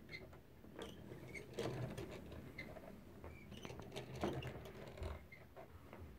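Small hand-cranked driftwood automaton being turned: its wire crank and little wooden mechanism give faint, irregular clicks and creaks.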